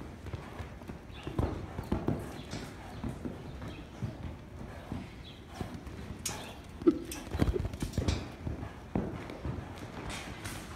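Horse's hooves thudding on a sand arena floor as it canters and bucks, in irregular beats, the loudest a little past the middle.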